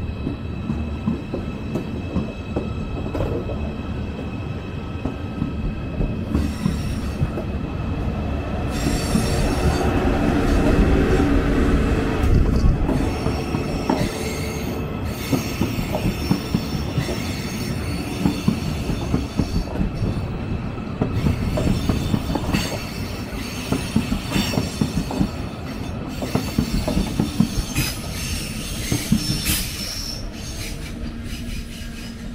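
Deutsche Bahn ICE high-speed trains moving slowly along the platform tracks. There is a continuous low rumble under several steady high-pitched wheel squeals and scattered clicks over the rails. The sound swells to its loudest about a third of the way through.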